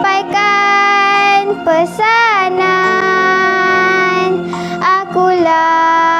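A young girl singing long held notes that slide from one pitch to the next, over a musical backing track, with a short break for breath near the end.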